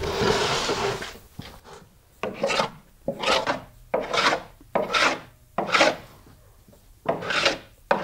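Hand plane shaving wooden hull planking in short, repeated strokes, about seven in all with a brief pause near the end. It is hollowing the inside curve of a double-planked hull until the glue lines between planks disappear.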